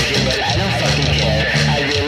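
Post-punk band music: electric guitar and bass guitar playing, with a voice singing over them.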